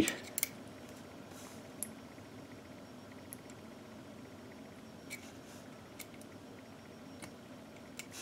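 Faint, scattered small metallic clicks, about six spread out, as a rifle bolt extractor is worked by hand against the rim of a brass cartridge case to test how it snaps over and grips the rim after polishing. Low room tone between the clicks.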